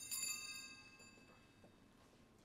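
A single high, bright metallic chime, struck once and dying away within about a second.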